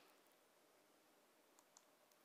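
Near silence: room tone, with a couple of faint clicks near the end.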